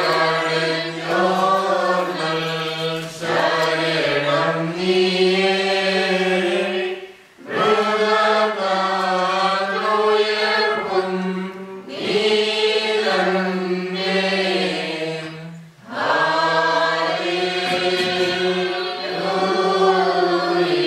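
Voices chanting a Syro-Malankara liturgical hymn in long sustained phrases of about four seconds, with short breaks for breath between them.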